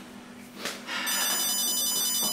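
A phone ringtone ringing: a high, rapidly trilling ring that starts about a second in and lasts just over a second before the call is answered.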